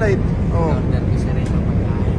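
Steady low drone of an airliner's engines and airflow inside the passenger cabin in flight, with brief snatches of voices near the start.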